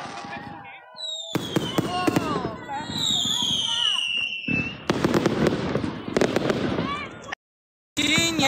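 Fireworks going off: a run of crackles and pops with two whistles falling in pitch, about a second and about three seconds in. After a brief break comes a denser stretch of crackling, which cuts off suddenly shortly before the end.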